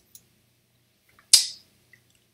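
A single sharp click about a second and a half in, with a few faint ticks before it.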